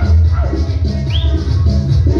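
Loud, upbeat Latin dance music with a heavy bass beat and a steady shaker rhythm. A short, high rising squeak sounds about halfway through.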